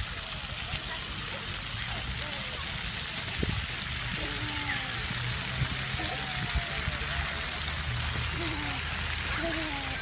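Steady hiss of splash-pad water jets spraying, with children's voices calling in the distance.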